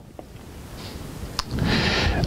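Rustling and rubbing of clothing against a clip-on microphone as the wearer moves, growing louder, with one sharp click partway through.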